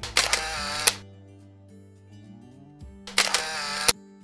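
Two camera-shutter sound effects, about three seconds apart, each a burst of just under a second that opens and closes with a sharp click, over background music.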